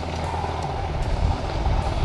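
Motorcycle riding noise at low speed: an engine running steadily under a rush of wind on the microphone.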